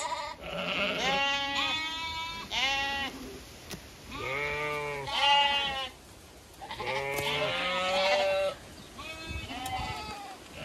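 Zwartbles sheep bleating: about five long, quavering bleats one after another, with short pauses between them.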